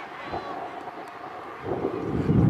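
Open-field ambience with faint, distant shouting voices, then wind buffeting the microphone as a rising low rumble near the end.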